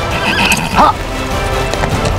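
A horse whinnies once, a short wavering call about half a second in, over background music.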